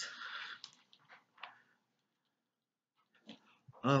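A short breathy hiss that fades within half a second, then a few faint clicks from handling a plastic eyebrow-cream compact, then quiet.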